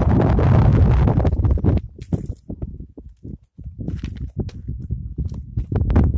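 Wind buffeting the camera's microphone in gusts: heavy rumbling noise for the first two seconds, a lull about halfway, then fitful short bursts.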